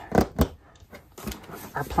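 Two quick knocks about a fifth of a second apart as a clear plastic storage bin packed with paper tags and envelopes is set on the table, then faint rustling of paper.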